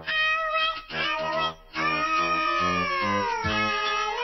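Children's song: a voice sings over a bouncy bass accompaniment, then holds a long note from about two seconds in that slides downward in pitch.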